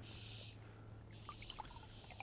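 Faint river water trickling, with a few small drips from about a second in, over a steady low hum.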